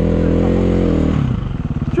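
KTM EXC enduro motorcycle engine revving up under throttle, holding high revs for about a second, then dropping back to a lower, pulsing run near the middle.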